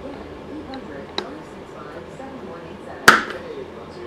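Small hand tools and plastic chainsaw parts handled on a workbench while fuel line is pulled through an oil tank: a light click about a second in, then a sharp, hard knock with a brief ring about three seconds in. Faint voices murmur underneath.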